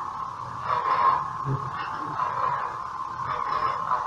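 Replica lightsabers' steady electronic hum, swelling into whooshes as the blades are swung, about a second in and again twice later.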